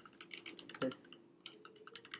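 Computer keyboard typing: a quick, uneven run of light key clicks, about a dozen keystrokes.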